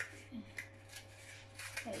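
Paper cupcake liners crinkling in the hands as they are peeled apart from a stack, a few short, faint rustles.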